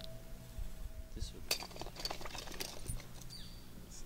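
A cluster of light clicks and clinks, from about a second in to near three seconds, as a weld mold and copper ground wire are handled against the top of a copper ground rod. A low steady hum runs underneath.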